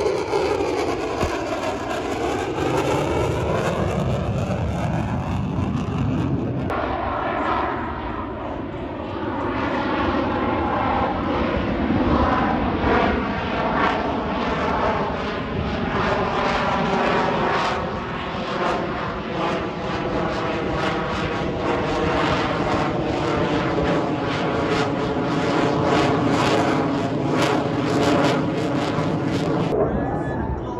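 Lockheed Martin F-22 Raptor's twin afterburning turbofans running at high power as the fighter passes low and manoeuvres. The jet noise is loud and continuous, with a whooshing tone that sweeps down and up as the aircraft passes. About six and a half seconds in it changes abruptly to a new pass.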